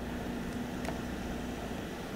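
Steady low background hum, with one faint click a little under a second in from a key pressed on a DAGR GPS receiver's rubber keypad.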